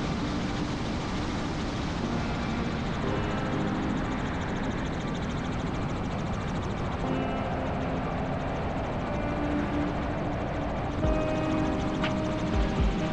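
Helicopter in flight: a steady rush of rotor, engine and wind noise, with a faint tune of changing notes over it.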